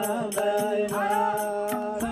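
Nepali folk singing with a slow, chant-like melody, kept to a steady beat by small brass hand cymbals struck a few times a second and soft madal drum strokes.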